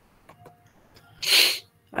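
A single short sneeze, a burst of breathy noise about a second and a half in, after a quiet pause.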